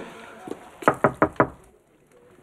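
Knuckles knocking on a wooden door: a quick run of four raps about a second in, after a single softer tap.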